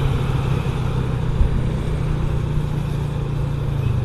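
Motorcycle engine running steadily at cruising speed, a low even hum under road and traffic noise.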